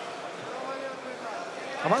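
Background noise of a large hall, with faint scattered voices, under boxing commentary. A male commentator's voice comes in loudly near the end.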